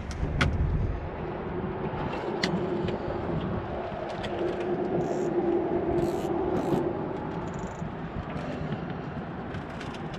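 Steady rumble of traffic on the bridge overhead, with one vehicle's hum building and fading through the middle. Light clicks from a spinning reel and fishing line being handled close by.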